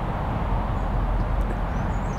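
Wind buffeting a clip-on microphone outdoors: a steady low rumble with no break.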